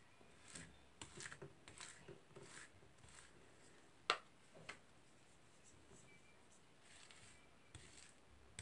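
Plastic spatulas faintly scraping and spreading ice cream mix across the cold plate of a rolled-ice-cream pan. There is a sharp click about four seconds in, as the spatula blades knock together.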